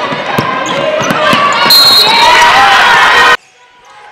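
Basketball game sound from the court: a ball bouncing on the hardwood amid crowd noise. The crowd noise swells loud in the second half and cuts off suddenly a little over three seconds in.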